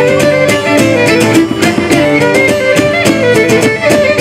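Cretan violin bowing the melody of a Cretan song tune in an instrumental passage between sung verses, with laouto strumming a steady rhythm underneath.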